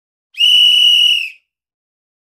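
A single loud whistle blast: one steady high tone lasting about a second.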